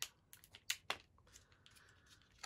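Quiet plastic clicks from the clear plastic cover of an eyeshadow sample card being opened and handled: four sharp clicks in the first second, the two near its end the loudest, then a short scraping rustle in the second half.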